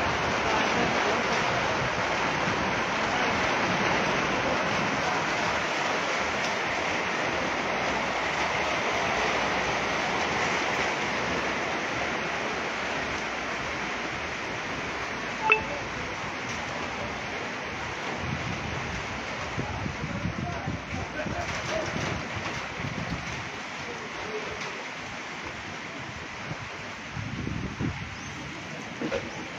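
Heavy rain and hail pelting corrugated metal roofs, a dense steady hiss that gradually eases. A single sharp click about halfway through.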